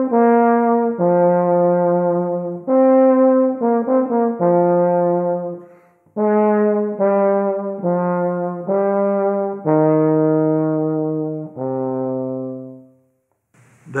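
Euphonium playing a slow solo phrase loudly, each note started with a hard, punchy attack and an edgy, trombone-like tone: a forte that is more edge and more punch than wanted on the euphonium. Two phrases of sustained notes with a brief breath about six seconds in, the last note lower and dying away near the end.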